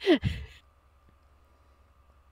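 A person's short sigh, falling in pitch and fading within about half a second, then near silence with a faint steady hum.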